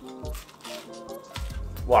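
Background music with steady held tones, over a man biting into and chewing a grilled sandwich, with a few soft crunches.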